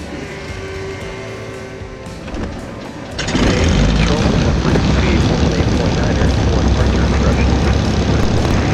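Cirrus SR22's six-cylinder Continental piston engine being started: a quieter stretch of cranking, then the engine catches about three seconds in and runs loudly and steadily with the propeller turning.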